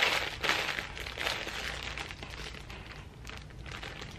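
Clear plastic polybag crinkling as it is handled, loudest in the first second or so and fading after.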